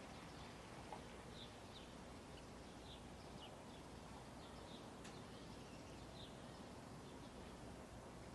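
Near silence: faint low background rumble with small birds chirping faintly, short high chirps every second or so.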